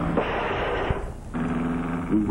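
Cartoon sound effect of a taxi whisking off: a burst of rushing noise lasting under a second, between stretches of a low steady hum.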